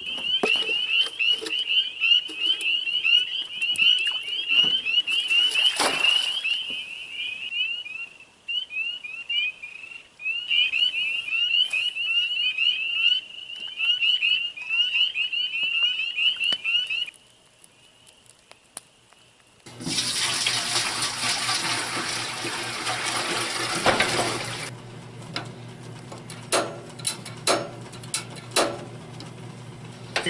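A chorus of frogs, many rapid high peeps overlapping, for most of the first seventeen seconds. After a brief lull there are about five seconds of running water, then a quieter steady hiss with a few light clicks near the end.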